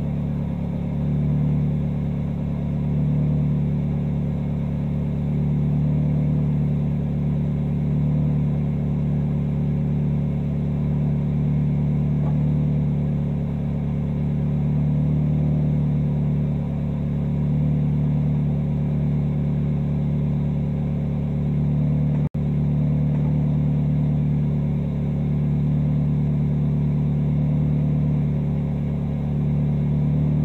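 Mazda Miata race car's four-cylinder engine idling steadily while the car stands still, heard from inside the cabin, with a slight rise and fall in loudness every couple of seconds. The sound drops out for a split second about two-thirds of the way through.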